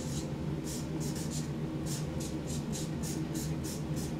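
Marker pen scratching across a paper sheet on a wall as letters and arrows are drawn, in short quick strokes about four a second.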